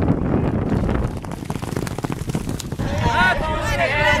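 Racehorses galloping on a dusty dirt track, heard through wind on the microphone and voices of spectators. Music with a melody comes in near the end.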